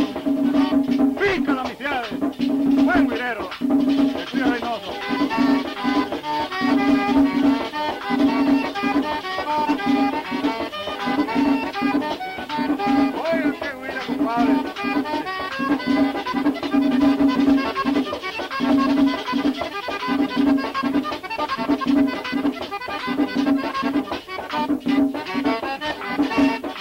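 Pambiche-style merengue típico led by a button accordion, with percussion keeping a steady, even dance beat.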